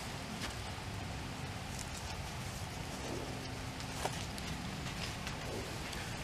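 Quiet, steady outdoor background noise with a few faint, brief clicks from a seasoning shaker being handled over a metal tray of raw meat.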